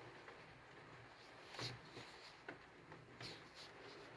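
Near silence with faint handling sounds of a stone grinding tool being turned over in the hand: a few soft rubs of skin on stone and a light tick.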